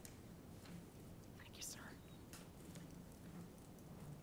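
Near silence: room tone with faint rustles and clicks, a brief soft rustle about one and a half seconds in, and a faint murmured voice.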